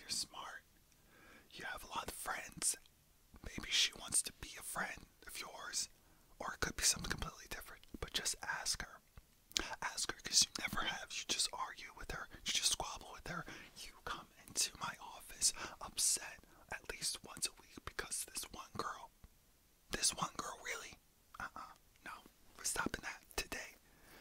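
A man whispering phrase after phrase, with short pauses between.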